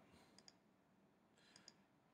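Near silence with two faint double clicks of a computer mouse, one about half a second in and one near the end.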